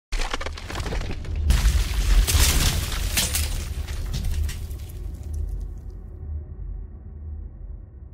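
Sound effect of stone or concrete breaking apart: crackling, then a loud crash about one and a half seconds in with more cracks over the next two seconds, over a deep rumble that slowly fades away.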